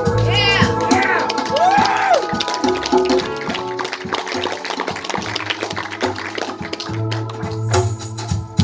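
Live band playing an instrumental break: an electric guitar solo with sliding, bent notes in the first couple of seconds, over the band's rhythm and shaker.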